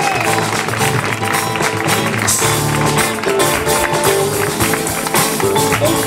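Live band playing a song with drum kit, electric and acoustic guitars, with a steady beat.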